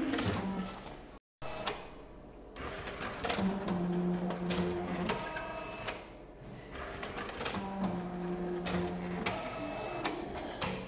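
Bank-statement printer at work: its feed motor hums in two stretches of about a second and a half each, with sharp mechanical clicks in between.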